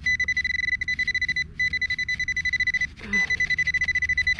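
Nokta AccuPoint pinpointer beeping rapidly on one high pitch, about ten beeps a second, in three runs with short breaks: it is sounding off on a buried metal target.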